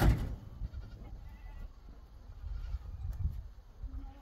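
Goats bleating faintly over a steady low rumble of wind, with one sharp knock at the very start that is the loudest sound.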